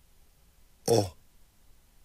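A voice saying the letter sound "o" once, briefly, about a second in, while sounding out a word letter by letter; otherwise only faint room tone.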